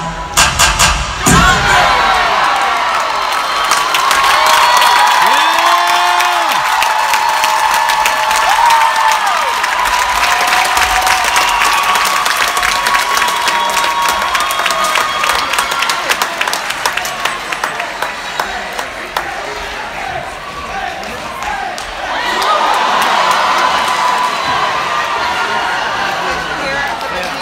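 Theatre audience cheering, screaming and clapping; a bass-heavy dance track cuts off about a second in, and the crowd noise swells again near the end.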